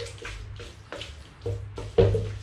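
Wooden spatula scraping and knocking against a wok while chopped pork sisig is stir-fried: uneven strokes, two or three a second, each with a short metallic ring, the hardest knock at the end, over a steady low hum.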